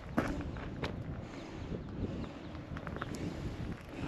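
Footsteps of a hiker climbing a stony hillside trail, irregular steps over a low rumbling noise.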